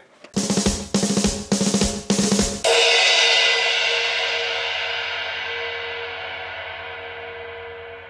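Closing music sting on a drum kit: four heavy snare-and-kick hits about half a second apart, then a final crash cymbal and held chord that rings out and fades slowly.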